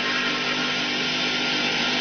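Steady hiss with a low, even hum from the worn soundtrack of an old film, with no voice or music.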